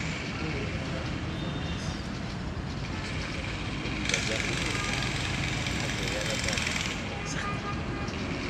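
Steady outdoor background noise with indistinct voices, and a brighter hiss that rises about halfway through and fades about a second before the end.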